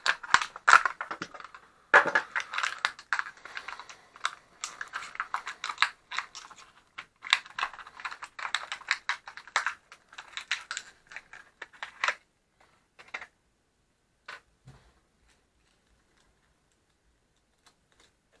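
Stiff plastic blister packaging crackling and crinkling as it is cut and pried open with a utility knife, busy for about twelve seconds, then a few separate light clicks as the contents are handled.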